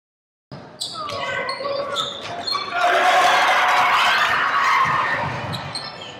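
Basketball dribbled on a hardwood gym floor, with sneakers squeaking and voices echoing in the gym. The game sound cuts in about half a second in, and the voices grow louder from about three seconds.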